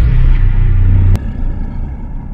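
Cinematic intro sound effect: a loud, deep rumble with a sharp click about a second in, after which the rumble falls quieter.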